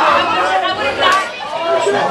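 Crowd of celebrating football fans shouting and cheering over one another, many voices at once, in a packed bar after a game-winning play.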